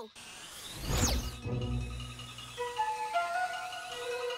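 Cartoon soundtrack: a whoosh effect about a second in over a low rumble, then background music with held notes stepping upward.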